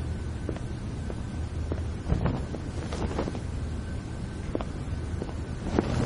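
Low, steady room rumble with soft, irregular footsteps of a man walking across a hard studio floor.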